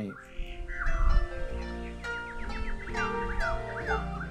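Harp music with birdsong mixed in: held harp notes ringing under repeated short chirping bird calls.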